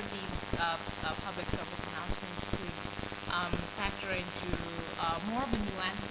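A person speaking off-microphone, heard faintly through a steady crackling hiss of many small clicks.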